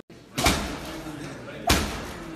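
Two punches from boxing gloves landing on a heavy punching bag, each a sharp smack, a little over a second apart.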